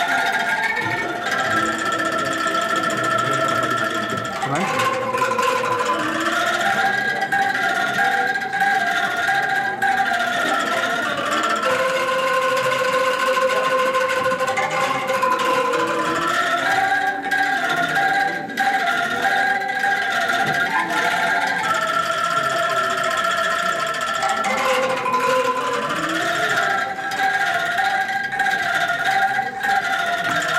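Bamboo angklung ensemble playing a melody in held, shaken notes that step up and down, with one phrase coming round again.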